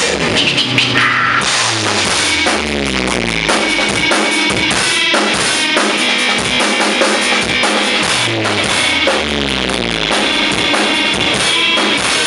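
Drum kit played live over a rock backing track: rapid drum hits and cymbal crashes over guitar and bass. A bass line falls in steps twice, a little after two seconds and again near eight seconds.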